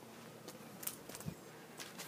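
Faint outdoor background with a few soft, irregular clicks and one light thump a little past the middle.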